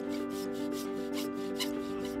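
Fine-toothed hand saw cutting wood in quick, even strokes, about four or five a second, over background music with held notes.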